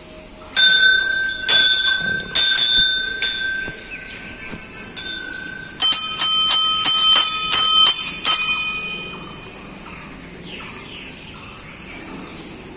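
Hanging metal Hindu temple bells rung by hand: one bell struck four times about a second apart, then a second, slightly lower bell rung quickly about eight times. The ringing fades out over the last few seconds.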